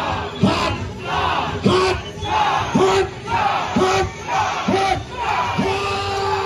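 A crowd chanting "hot dog!" in unison, one loud shout about every second, the last one held longer.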